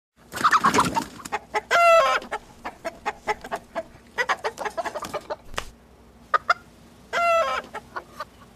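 A chicken clucking in short separate notes, with two longer, drawn-out squawking calls: one about two seconds in and one near the end.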